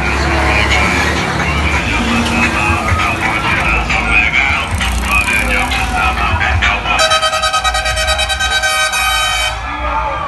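Low rumble of passing parade trucks mixed with voices and music. About seven seconds in, a vehicle air horn blares for about two and a half seconds with a fast pulsing.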